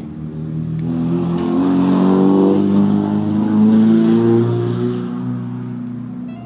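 A passing motor vehicle's engine, loud and gliding in pitch. It swells to a peak about three to four seconds in, then drops in pitch and fades as it goes by.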